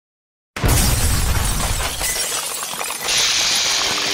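Sound effects for an animated intro logo. About half a second in, a sudden loud crash starts, with a heavy low rumble that fades over the next two seconds. From about three seconds in, a steady high hiss follows.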